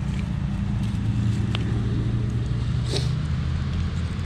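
A steady low rumble, with a faint click about a second and a half in and a brief higher sound near the end.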